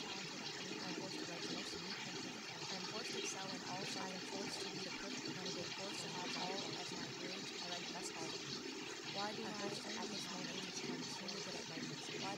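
Faint, overlapping spoken affirmations, too indistinct to make out, buried under a steady rushing noise.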